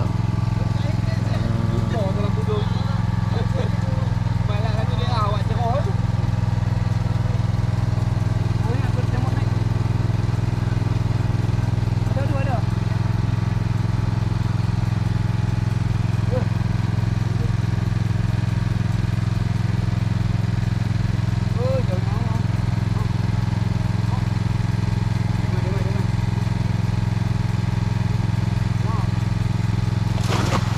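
An onboard engine on a small fishing boat running steadily at a constant speed, a low, even drone that does not change throughout, with faint voices in the background.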